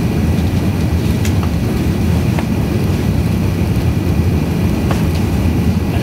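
Steady low cabin roar of an Airbus A380-800 climbing after takeoff: engine and airflow noise heard from a window seat inside the cabin, with a faint steady high tone above it.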